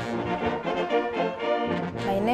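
Brass band playing: several brass instruments holding notes together, the notes changing in steps.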